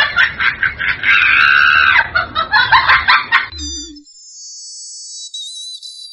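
A comic sound effect of a rooster clucking and crowing, with choppy clucks around one long arched crow. About three and a half seconds in it gives way to a quieter high chiming tone of several steady notes held to the end.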